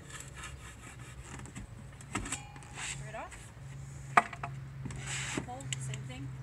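Wooden camper-van tabletop being lifted off its metal pedestal leg and set down, with a sharp knock about four seconds in and a brief scraping rub a second later. A steady low hum runs underneath.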